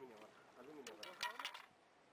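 Indistinct talking, with a quick run of sharp clicks about a second in that is the loudest sound.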